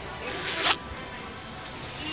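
A single brief rasping scrape about half a second in, the loudest sound, over the steady background noise of a moving escalator ride.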